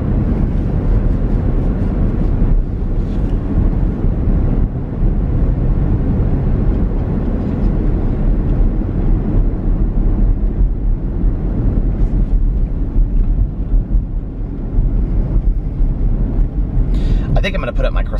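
A car being driven, heard from inside the cabin: a steady low rumble of road and engine noise, with no distinct events.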